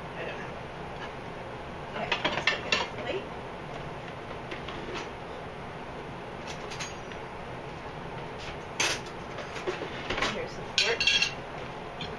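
Plates and a metal fork clinking on a table: a cluster of clatter about two seconds in and more clinks near the end as a plate is set down and the fork handled.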